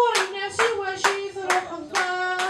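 Beatboxing into a hand-cupped microphone: sharp percussive hits about twice a second over a hummed, stepping melodic line.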